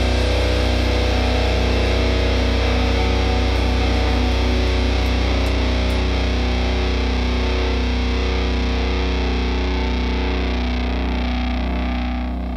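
A distorted electric guitar chord, heavy in the low end, ringing out as the last chord of a metalcore song. It holds steady with no drums and slowly fades near the end.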